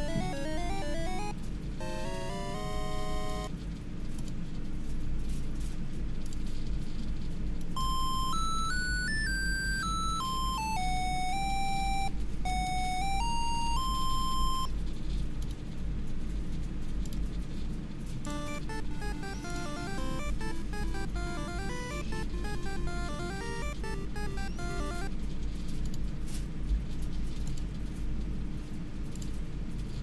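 Brushless drone motors beeping out short ringtone-style melodies under Bluejay ESC firmware. There are quick note runs near the start, a clear single-line tune in the middle, and a busier passage of several voices playing together later. A steady hum runs underneath.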